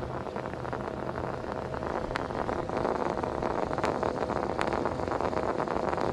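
Air drawn in through the Max-Air livewell air-intake vent on a bass boat's gunwale while the livewell recirculation pump runs: a steady rushing noise over a faint low hum, pulling in plenty of air as the aerator should.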